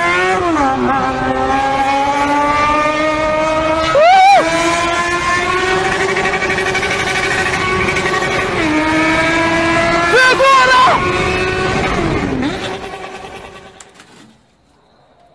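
A high-revving engine, as in a race car or motorcycle, held at high revs with its pitch creeping slowly upward, surging briefly about four seconds in and again around ten to eleven seconds, then fading out near the end.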